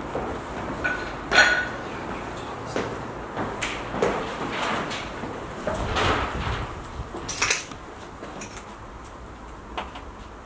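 Footsteps over broken glass and rubble, with scattered clinks, crunches and knocks; the sharpest clink comes about one and a half seconds in.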